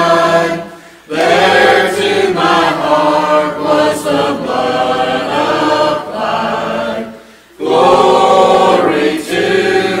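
Church choir of mixed voices singing a hymn in long held phrases, pausing briefly for breath about a second in and again about seven seconds in.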